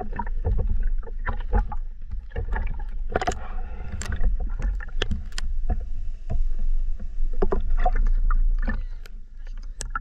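Water noise around a camera: a steady low rumble with irregular splashes, clicks and knocks. It fades near the end.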